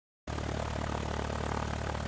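A propeller aircraft's engine running steadily, starting suddenly a moment in.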